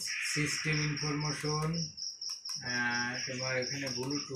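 A steady high-pitched chirping that pulses several times a second, with a person's low voice heard in two stretches beneath it.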